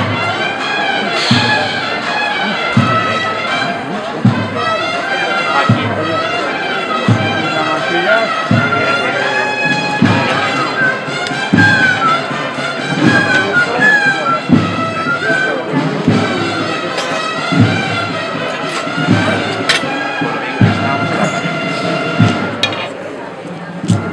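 A band of brass and wind instruments playing a slow processional march, with a bass drum struck about every second and a half.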